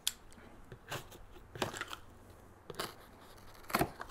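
Pocket knife slicing the packing tape on a cardboard box, a handful of short scraping cuts about a second apart.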